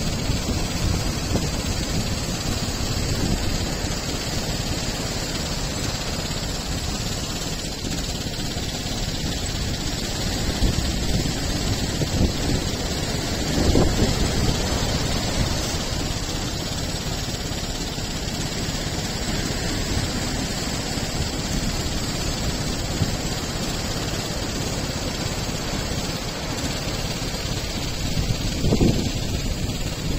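Storm surf breaking on the shore, a steady rush of waves and foam mixed with wind buffeting the microphone, swelling louder about halfway through and again near the end.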